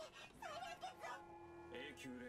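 Faint, high-pitched female anime character's voice speaking Japanese dialogue from the film. About halfway through, the voice gives way to a steady held tone.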